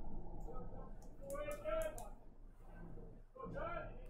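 Faint voices talking at low level, with no close-up commentary.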